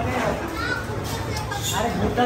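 Background chatter of people's voices, children's among them, over a low steady rumble.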